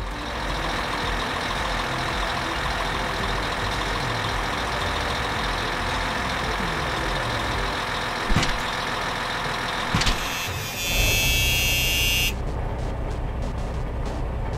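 A heavy-vehicle engine sound effect, dubbed over a toy front loader, running steadily with two short clicks. About three-quarters through it grows louder and rougher, and a hiss cuts off sharply.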